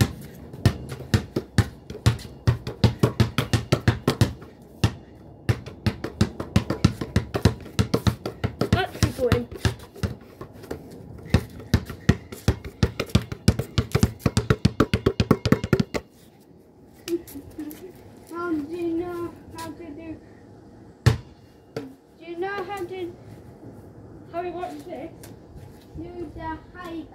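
Basketball dribbled fast and low on concrete paving, about four or five bounces a second, stopping abruptly after about sixteen seconds. Talking follows, with one more bounce partway through it.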